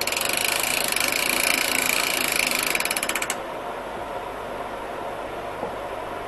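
Fast ratcheting clatter from a ratchet mechanism worked by hand at the sawmill's log bed. It lasts about three seconds, slows into separate clicks near the end and stops abruptly, over a steady mechanical hum.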